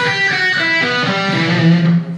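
Electric guitar picked through an amplifier: a quick single-note lick built from a scale pattern, ending on a held low note that stops suddenly.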